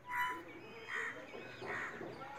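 A crow cawing three times, each call short and about three-quarters of a second apart.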